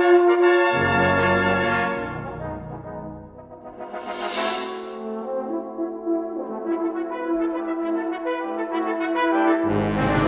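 Brass band playing a slow, sustained passage. Low brass enters about a second in and the sound thins to a soft point around three seconds. A brief high shimmering swell rises and falls around four seconds, then the band builds again, with the full low brass returning near the end.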